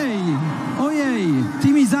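A man's excited voice calling out in two long, falling exclamations.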